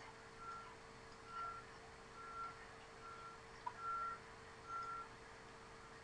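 Faint short beeps at one steady pitch, repeating evenly a little more than once a second, over a steady low hum.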